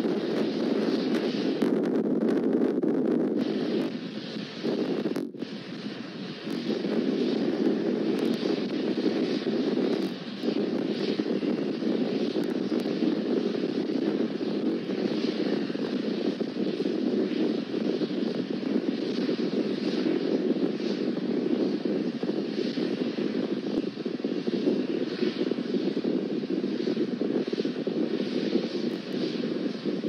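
Starship SN8's three Raptor engines firing in powered ascent, a steady low rushing noise, with brief dips in level about four to six seconds in and again near ten seconds.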